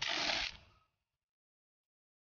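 Blue masking tape ripped off its roll in one short tear lasting about half a second.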